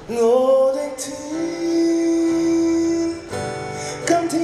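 A man singing live while strumming his own acoustic guitar, holding one long note for about two seconds before a short break and the next line.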